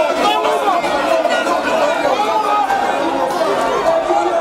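Dense crowd chatter: many people talking at once in a jostling throng, voices overlapping into a steady din with no single speaker standing out.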